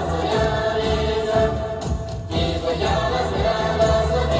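Tibetan dance song: several voices singing together over music with a steady, pulsing beat.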